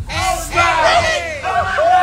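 A group of men shouting and whooping together, overlapping loud "hey" and "oh" calls, with one long drawn-out yell starting near the end.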